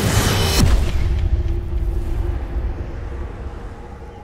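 Cinematic missile-strike sound effect: a loud rushing launch noise ends about half a second in with a deep boom, and its low rumble fades away under a held low musical note.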